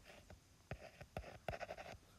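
Stylus on a tablet screen drawing a short line and writing a label: a few sharp taps, then a quick run of short scratchy strokes near the end.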